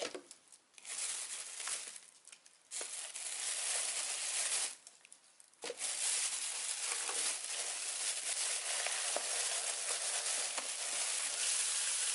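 A thin plastic carrier bag rustling and crinkling as hands rummage in it and take food containers out. It rustles in two stretches, with a short pause about five seconds in.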